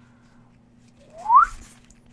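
A person whistling one short note that glides upward, about a second and a half in.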